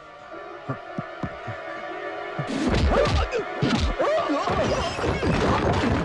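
Film fight-scene sound effects over background music: a held chord with a few scattered knocks, then, about two and a half seconds in, a louder, busy run of punch and smash hits mixed with shouts.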